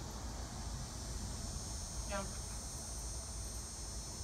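Steady, high-pitched chorus of insects, several thin tones held without a break, over a constant low rumble.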